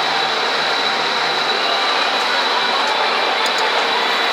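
Steady machinery noise from a moored warship: an even, loud rushing hiss, like ventilation blowers running, with a thin high whine held above it.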